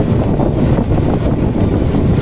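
Motorcycle riding along a street: a steady low engine and road rumble.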